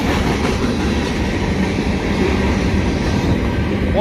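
Freight train cars (covered hoppers, a gondola, then double-stack intermodal well cars) rolling past at close range: a steady, even noise of steel wheels on the rails.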